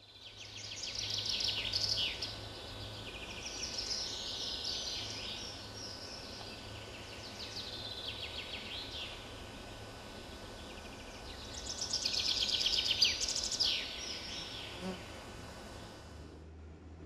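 Songbirds singing: quick trills and chirps, loudest about a second in and again about twelve seconds in, over a faint low steady hum.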